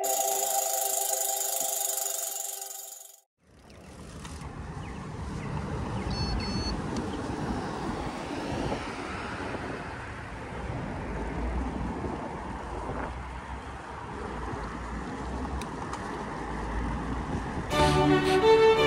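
Intro music fading out in the first three seconds, then, after a brief gap, wind rumbling on a bicycle's handlebar-mounted phone microphone with steady street traffic and road noise. Orchestral music starts right at the end.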